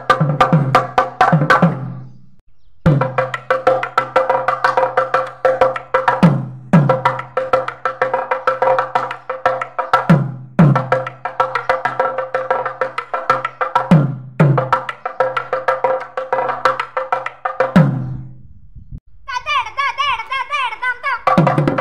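A thavil, the South Indian two-headed barrel drum, played in fast stick strokes with a sharp ringing tone. Deep booms drop in pitch every three to four seconds. The playing breaks off briefly about two seconds in and again near the end.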